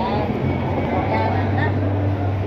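Shopping-mall ambience: a steady low hum with indistinct voices of passers-by chattering over it.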